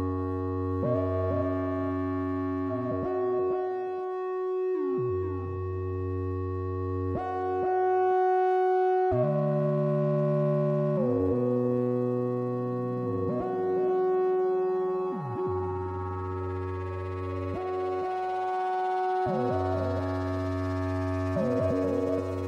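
Analog synthesizers playing slow, sustained chords over a held note, sliding in pitch into each new chord every couple of seconds.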